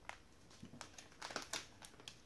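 Plastic wrapping on a packet of shortbread crinkling in short bursts as it is handled, loudest about one and a half seconds in.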